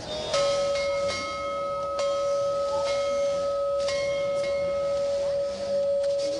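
A sustained bell-like ringing tone at one steady pitch, with fainter overtones that come and go and a few light strikes, held for about six and a half seconds.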